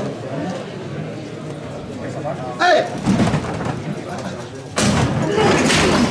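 Men's voices calling out, then about five seconds in a thud and a sudden loud burst of noise as a team of costaleros lifts a Holy Week paso from the ground.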